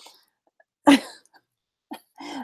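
A woman's single short cough about a second in.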